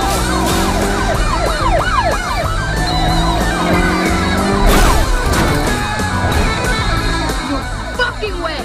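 Film car-chase soundtrack: music under a mix of siren-like wailing glides and car noise, with a sharp crash about five seconds in.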